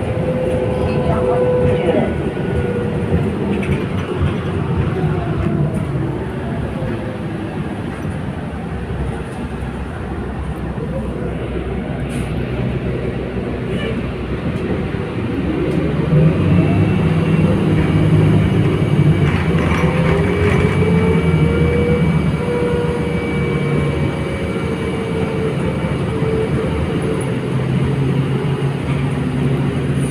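City bus running, heard from inside the passenger cabin: steady engine and road noise with a whine that glides up and down in pitch as the bus speeds up and slows, growing louder about halfway through.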